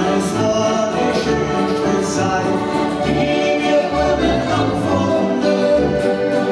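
Live accordion and acoustic guitar playing a Christmas song, the accordion holding full, steady chords.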